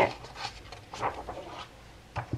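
A picture-book page being turned by hand, a soft rustle of paper after the last spoken word.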